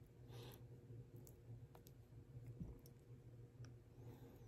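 Near silence with a few faint, scattered clicks of wooden chopsticks against a metal spoon as chicken meat is picked off the bone, over a low steady hum.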